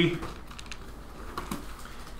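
Pages of a Bible being leafed through on a lectern: a few soft paper rustles and light clicks.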